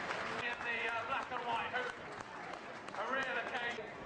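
Indistinct voices talking over steady outdoor background noise, with no clear words.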